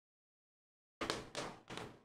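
About a second of dead silence, then three short knocks in quick succession, each with a brief rustling fade.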